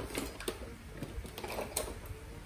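A few light, scattered clicks and taps of small objects being handled on a workbench.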